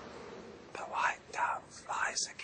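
A crowd's noise dies away to a hush. Then come three short, soft whispers spaced about half a second apart.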